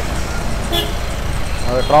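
Steady low rumble of wind and road noise from riding a scooter through city traffic, with one short vehicle horn toot a little under a second in.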